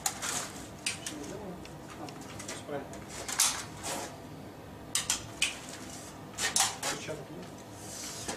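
Scattered short clacks, knocks and scuffs of a rifle being handled and of shoes on a hard floor, as a man pivots on the spot and raises the rifle to his shoulder.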